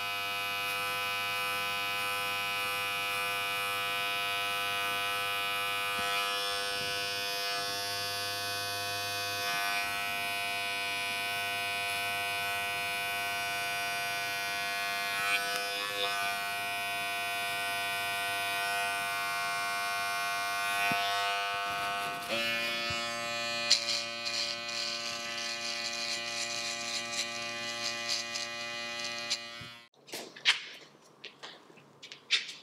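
Wahl Magic Clip cordless hair clipper buzzing steadily as it is run over the nape of the neck, cutting the hair short in a fade. About 22 seconds in the buzz changes pitch, with a few light clicks, and it cuts off suddenly near the end.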